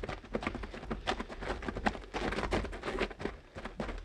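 Radio-drama studio sound effects: a quick, irregular run of footsteps and knocks, fainter than the dialogue around it.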